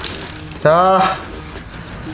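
Metal clicking and scraping as the inner part of a Honda Dio scooter's front fork leg is worked out of its tube by hand, with a short drawn-out exclamation about a second in.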